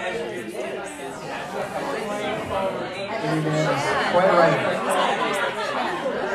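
Indistinct chatter of several people talking at once, with overlapping voices and no music playing.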